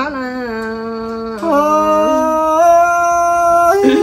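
A single voice singing a giao duyên folk love song without accompaniment: a drawn-out sung 'ôi' that slides down at first, then long held notes stepping upward, breaking off near the end.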